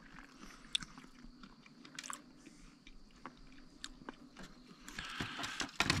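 A person chewing a mouthful of batter-fried carp close to the microphone, with scattered small clicks of the bite.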